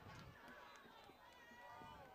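Near silence: faint outdoor stadium ambience with faint distant voices.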